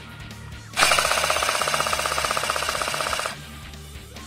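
Airsoft gun firing one long full-auto burst of about two and a half seconds, a rapid even rattle of shots that starts about a second in and cuts off suddenly, over background music.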